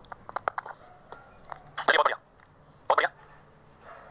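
A man drinking from a glass: a quick run of small swallowing clicks in the first second, then two short bursts of voice about a second apart.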